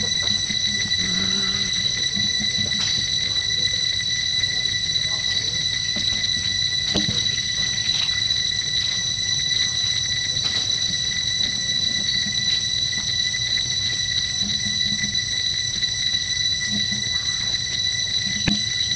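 A steady high-pitched insect drone holding one pitch throughout, with fainter overtones above it, over a low rumble and a few soft clicks.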